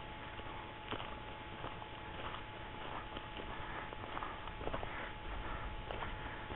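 Footsteps crunching on dry leaf litter along a bush track, faint and irregular.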